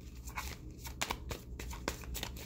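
A deck of tarot cards being shuffled by hand, packets of cards lifted from the deck and dropped back onto it, giving a string of short, irregular card slaps and clicks.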